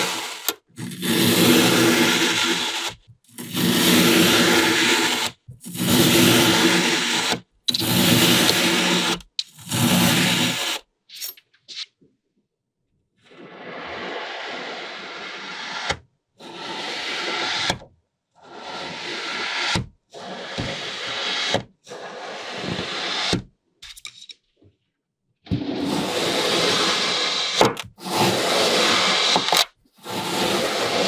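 Knife slicing through packed kinetic sand again and again: each cut is a scraping stroke of a second or two, with short pauses between. The strokes are quieter through the middle and loud again near the end.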